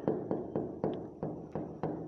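A stylus tapping and clicking on the glass of an interactive smart-board screen while a word is handwritten: a series of short, irregular taps, roughly three a second.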